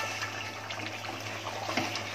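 Thin mutton curry gravy bubbling in a large aluminium pot while a wooden spatula stirs it: a steady watery bubbling with light stirring strokes.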